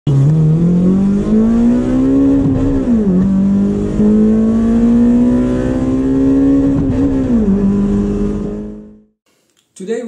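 Car engine accelerating hard, its pitch climbing steadily with two sudden drops where it shifts up a gear, then fading out near the end.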